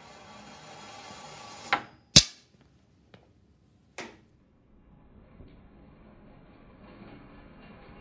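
A ball rolling down a ramp, its rolling noise building for a couple of seconds. A click follows as it comes off the edge of the table, then a sharp, loud impact as it lands on the hard floor, and a smaller bounce about two seconds later.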